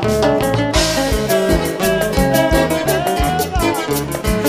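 Recorded Latin dance band music, an instrumental passage with a steady beat of bass and drums under melodic instrument lines; the full band comes back in at the start after a brief drop.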